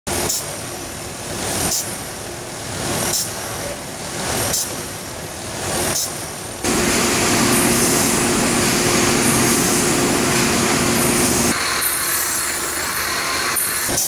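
UBE Model 91ALS bread autoloader and its conveyors running. For the first six or so seconds it cycles with a sharp click about every second and a half. Then it becomes a louder, steady mechanical whir with a low hum.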